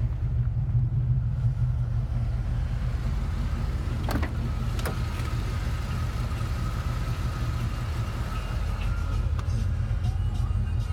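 Steady low idling rumble of a 1984 Hurst/Olds's 307 V8 engine. Two light clicks come about four and five seconds in, and after them a faint steady high tone.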